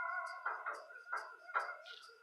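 A dog whining in a series of short, faint whimpers, about two or three a second, growing fainter.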